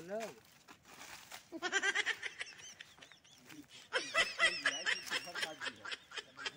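Footsteps crunching on dry fallen leaves, under faint high-pitched chatter in two spells.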